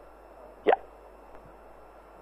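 A man says a single short "yeah" less than a second in, over the steady hiss of a lecture room.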